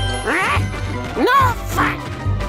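Cartoon background music under two short, high, gliding vocal squeaks from an animated character, about a second apart, each rising then falling in pitch.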